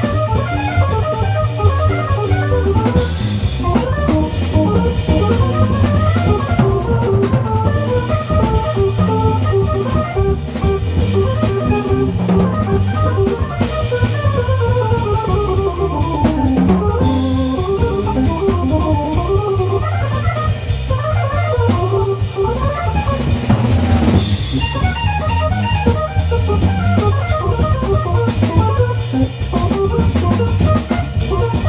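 Live jazz organ quartet: a Viscount Legend Live organ, voiced as a Hammond B3, plays quick rising and falling runs over a steady low bass line. A drum kit keeps time, with a guitar underneath.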